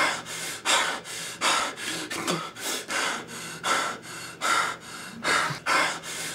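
A person breathing rapidly and noisily in short, sharp breaths, about two to three a second.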